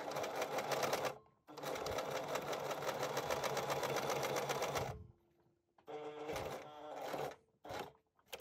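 Domestic electric sewing machine stitching in stop-start runs while edge-stitching fabric: a run of about a second, a longer run of about three and a half seconds, then after a pause a shorter run and a brief final burst near the end.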